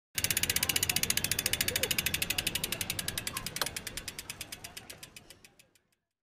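A bicycle's freewheel ratchet clicking as the rear wheel spins and coasts down. The clicks are rapid at first, then slow and fade until they stop just before the end, with one sharper click about three and a half seconds in.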